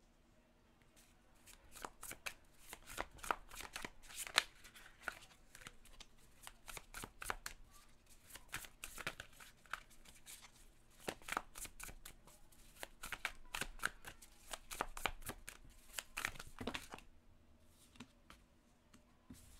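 A deck of slightly thick tarot cards being shuffled by hand: a long run of quick, soft card slaps and riffles that starts about a second in and stops shortly before the end.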